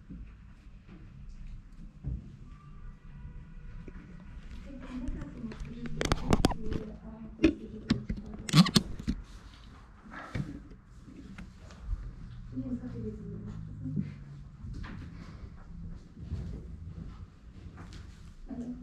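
Low, indistinct voices in a small room, with a few sharp knocks and handling noises bunched between about six and nine seconds in, louder than the talk.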